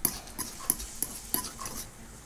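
Fork clicking and scraping against a dinner plate while a man eats, a string of short sharp clicks a few tenths of a second apart, with chewing sounds.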